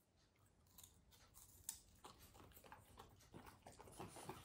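Very faint, irregular crunching and clicking of a French bulldog chewing a crunchy snack, with one slightly sharper crunch under two seconds in.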